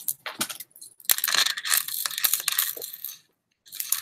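Beads of a long beaded necklace clicking and rattling against each other as it is handled: a few clicks, then a dense rattle from about a second in that stops shortly before the end.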